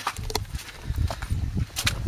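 Footsteps of a person walking across dead grass and patches of snow: uneven soft thuds with a few short, sharp crunches.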